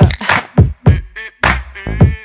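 Live band playing a hip-hop-style pop beat: sharp drum hits about every half second, with a short sung note near the end.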